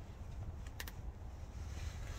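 Low rumble of wind and handling noise on a handheld camera's microphone, with two faint clicks close together a little under a second in.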